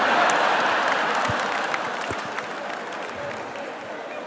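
Audience applauding, loudest at the start and dying away over a few seconds.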